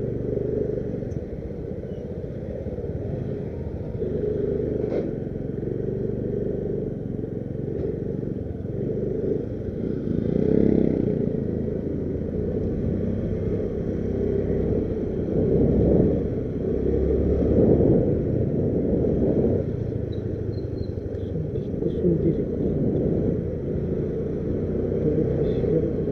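Motor scooter ridden along a street: a steady low engine and road rumble, swelling louder around ten and again around seventeen seconds in.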